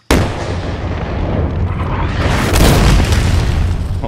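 A loud boom that starts suddenly and carries on as a deep rumble, swelling to its loudest about two and a half seconds in and dying away near the end: an explosion-like transition sound effect.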